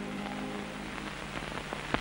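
The last held low notes of an orchestral accompaniment die away about a second in, under the steady hiss and crackle of an old film soundtrack. A single click comes just before the end.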